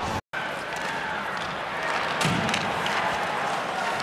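Ice-hockey arena crowd noise, a steady murmur of the crowd in the rink, with a few sharp clacks and a low thud about halfway through. A split-second dropout to silence comes just after the start.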